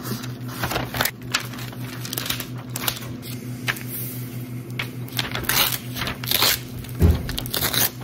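Layered thermal tattoo stencil paper being handled: a string of short paper rustles, peels and crinkles as the backing comes off and the sheet is smoothed flat on the table by hand, over a faint steady hum.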